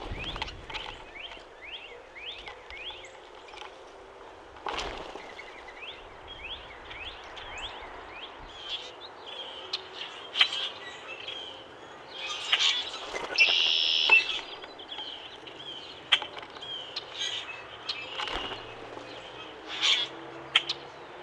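Wild birds calling around a backyard feeder: a run of quick rising chirps over the first few seconds, scattered calls and sharp clicks after, and a louder cluster of calls about thirteen seconds in. A common grackle's wings flutter as it takes off from the feeder at the very start.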